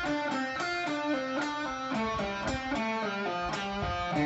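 Electric guitar in drop D tuning playing a fast single-note lead run, the notes following one another in quick succession.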